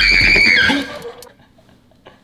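A woman's high-pitched scream held on one shrill note while she slides down a staircase slide, fading out within the first second.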